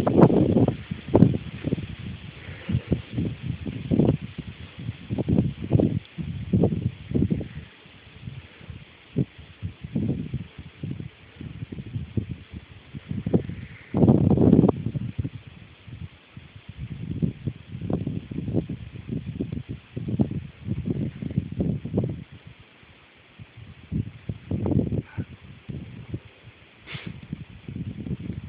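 Wind buffeting a phone microphone outdoors: irregular low gusts and rustling that come and go, with a slightly louder gust about halfway through.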